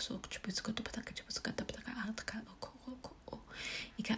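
Light language: a person's voice giving fast, half-whispered nonsense syllables full of tongue clicks and short voiced sounds, with a drawn-out hiss near the end.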